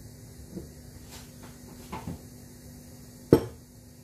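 Kitchen things being handled: a few light knocks and clicks, then one sharp clunk about three seconds in.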